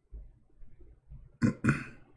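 A man's voice making non-word sounds: low, soft noises, then two short, loud vocal bursts in quick succession about a second and a half in.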